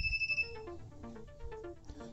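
Non-contact voltage tester pen sounding a steady high-pitched buzzer tone, its signal that the wire beside it is live; the tone cuts off about a third of a second in as the pen moves away. Faint background music with a simple stepped melody follows.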